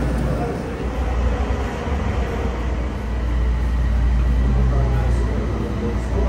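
Steady low rumble of a running vehicle, with faint voices in the background.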